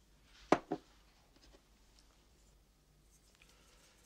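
Two sharp knocks of tableware on a kitchen table, about a quarter second apart, followed by a few faint clinks.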